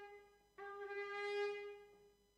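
Shofar (ram's horn) blown in long blasts: one blast trails off at the start and a second begins about half a second in, holding one steady note for about a second and a half. Each blast marks one completed round of a Jericho-style march.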